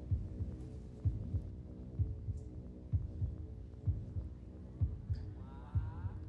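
Game-show suspense cue: a heartbeat-like double thump about once a second over a steady low drone.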